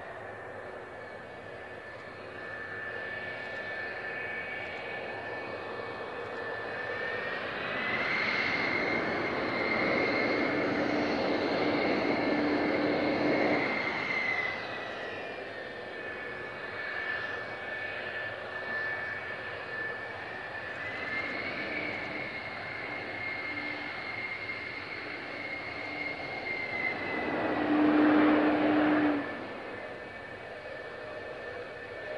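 Twin J79 turbojets of a taxiing F-4EJ Kai Phantom II, a steady high engine whine over a rushing roar. The whine swells louder twice and is loudest near the end, then drops away suddenly.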